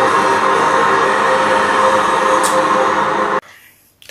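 Post-match stadium sound from the television broadcast: music over a dense, steady crowd noise. It cuts off abruptly about three and a half seconds in.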